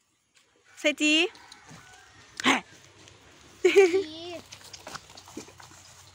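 Small dog barking a few times, short barks spaced a second or more apart, mixed with people's voices.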